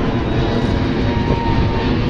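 Steady road and wind noise of a moving vehicle travelling along the road.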